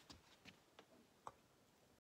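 Near silence broken by four faint clicks and taps at uneven spacing, the last one sharpest: handling noise from a phone as a hand takes hold of it.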